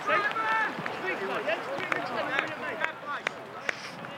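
Several men's voices shouting and calling over one another outdoors, with a few short sharp knocks: players celebrating a goal.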